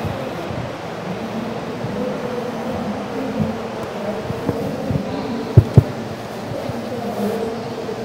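Steady hum and murmur of a large, busy exhibition hall, with a few small knocks and two loud thumps a fraction of a second apart about five and a half seconds in.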